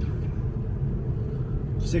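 Steady low road and tyre rumble inside the cabin of a moving 2016 Tesla Model S 90D, an electric car with no engine note; a man says "six" at the very end.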